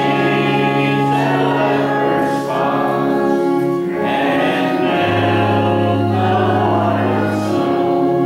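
A congregation singing a hymn with organ accompaniment, the organ holding long sustained chords under the voices; the organ's bass note changes about five seconds in.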